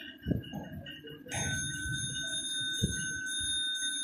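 A sustained bell-like ringing tone starts about a second in and holds for nearly three seconds, its highest part pulsing. Two low thumps come before and during it.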